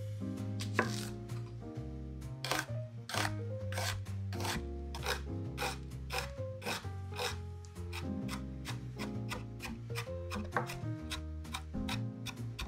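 Chef's knife dicing a red onion on a wooden cutting board: a quick run of sharp knife strikes on the board, about two to three a second, starting about a second in.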